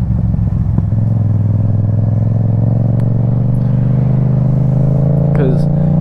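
Motorcycle engine running under way, with a short click a little under a second in, after which the engine note settles and climbs slowly as the bike gains speed.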